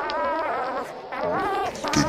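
Buzzy, warbling electronic lead line opening a dubstep track: a pitched tone wavering up and down in three short phrases, with brief breaks between them.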